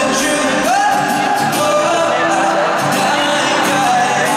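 Live performance of a slow pop ballad heard from the audience of a stadium concert: a male voice singing with acoustic guitar through the PA. About a second in, the voice rises to a note and holds it.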